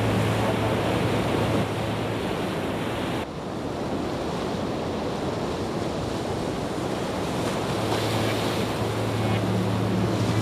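Ear-cleaning sound effect: a steady rushing, rustling noise that drops slightly and loses its top end about three seconds in. A low steady hum comes back near the end.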